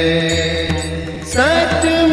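Hindu devotional mantra music: a held sung note over a steady low drone, then a new sung phrase sliding up into its note about one and a half seconds in.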